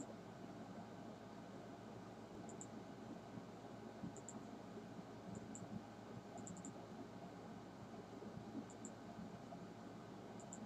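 Faint steady hiss with soft paired clicks every second or two, the press and release of a computer mouse being clicked.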